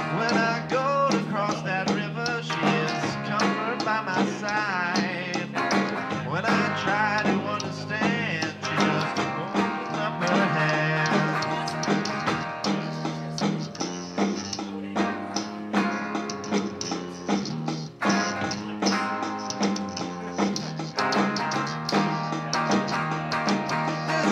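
Live rock band playing electric guitars, bass guitar and drums, with a steady bass line under drum hits.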